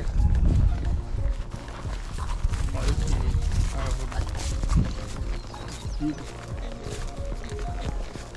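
A horse walking through grass, with scattered hoofbeats and tack noise and a steady low rumble on the microphone. Faint music runs underneath.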